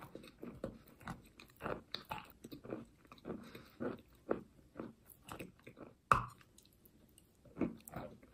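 Chewing and crunching of chalk coated in clay paste, a crunch every half-second or so, with one much louder bite about six seconds in and a short pause after it.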